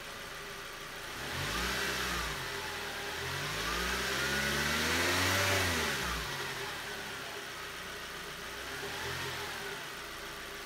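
Car engine idling and blipped three times: a short rev about a second in, a longer, higher rev peaking around five seconds, and a small one near the end, each falling back to idle.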